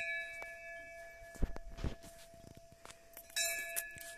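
Hanging temple bell struck twice, at the start and again a little past three seconds in, each strike ringing on in several clear tones and slowly fading. Two dull thumps come in between.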